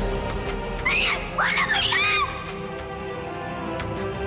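Dramatic background score with steady held tones; about a second in, a person screams in a run of short, high, arching cries lasting just over a second.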